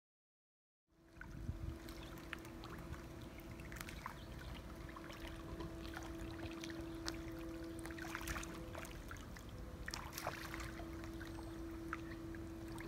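Silent for about the first second, then swimming-pool water lapping and splashing lightly around a floating foam mat, with scattered small splashes and clicks over a steady hum.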